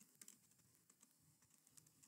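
Faint computer keyboard typing: a few soft key clicks, otherwise near silence.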